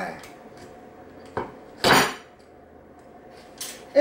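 Kitchen utensils knocking against dishes: a light clink, then a louder clatter with a brief ring about two seconds in, and another knock near the end.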